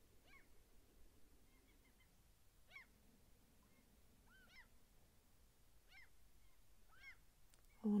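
Distant birds calling: about six faint, short calls, each rising and falling in pitch, spaced roughly a second apart over a quiet background.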